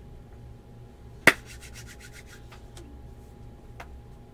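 Handling of a small cardboard trading-card box on a tabletop: one sharp tap about a second in, then a quick run of faint clicks and rustles.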